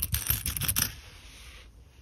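Pennies clicking against one another as they are spread and sorted by hand: a few quick sharp clicks in the first second, then a soft brushing rustle that fades away.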